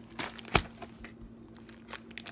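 Crinkling of a foil booster-pack wrapper being handled and opened, with a few small ticks and one sharp click about half a second in.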